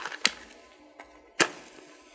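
Book of paper matches being handled and struck: a few light clicks and scrapes, then one sharp strike about one and a half seconds in.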